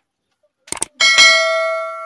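Subscribe-button animation sound effect: a couple of quick clicks, then a bell ding about a second in that rings on and slowly fades.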